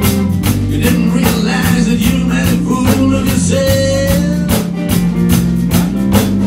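Live band playing: electric guitar, electric bass and drum kit with a steady beat. A held note sounds a little past the middle.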